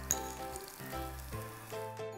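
Jowar roti sizzling in oil on a flat iron tawa. Background music with held notes that change step by step plays over it.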